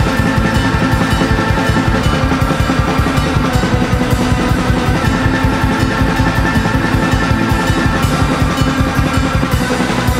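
Studio-recorded rock band playing, led by a busy, fast drum-kit pattern of bass drum and snare with rolls, over held bass and string notes, at a steady, loud level.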